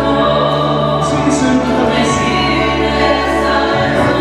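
Live praise-and-worship singing by a small group of singers at microphones over long held keyboard chords, amplified through a PA system in a hall.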